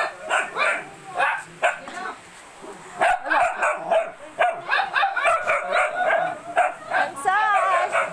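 Dogs barking and yipping in quick short calls, with a wavering whine near the end.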